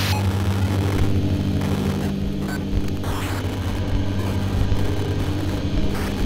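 Dark ambient drone: several steady low held tones under a wash of noise, with the rumble of a moving vehicle in it.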